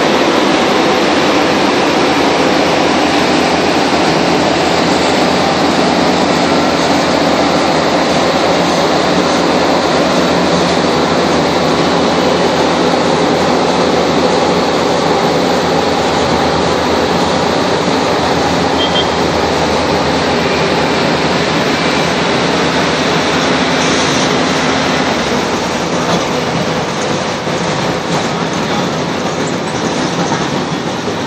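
Heavy road-paving machinery running: the engines of an asphalt paver and road rollers making a loud, steady drone that eases slightly near the end.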